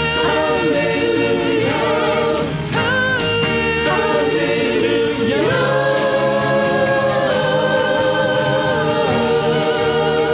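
A worship band's vocal group singing together over band accompaniment, holding long notes, with the pitch rising about five seconds in.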